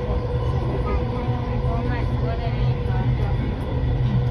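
Steady low rumble of a moving vehicle heard from inside, with a steady hum over it and faint voices in the background.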